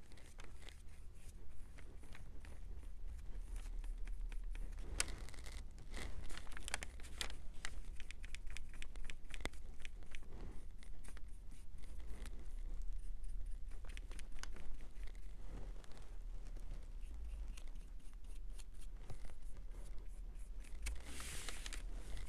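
Light scratching and small clicks of a small paintbrush on wooden craft pieces, with rustles of the pieces being handled on a kraft-paper-covered table. A low steady hum runs underneath.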